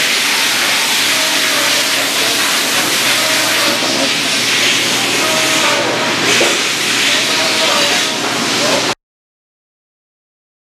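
Loud, steady machine-shop noise: an even hiss of running machinery and air with faint hums under it, cutting off suddenly about nine seconds in.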